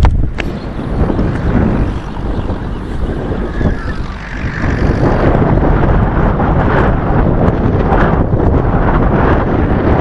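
Strong wind buffeting the microphone: a loud gusting noise, heaviest at the low end, easing briefly about two and four seconds in before steadying again.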